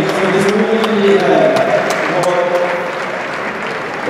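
Spectators in a large indoor sports hall clapping, with crowd voices mixed in; the claps come about three a second.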